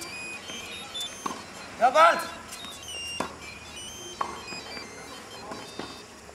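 Tennis balls making about five sharp knocks, spread unevenly, the strongest about three seconds in. A man shouts once about two seconds in.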